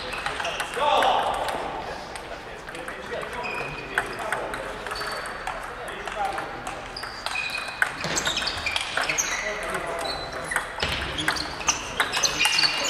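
Table tennis balls clicking on tables and bats from several tables at once, an irregular patter of short pings that grows busier in the second half. Voices sound through the hall alongside.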